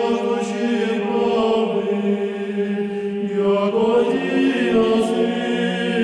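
A choir singing a slow chant, its voices holding long notes that shift in pitch partway through.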